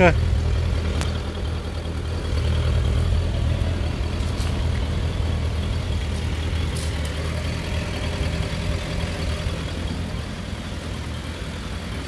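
Suzuki Bandit 1250F's inline-four engine idling steadily.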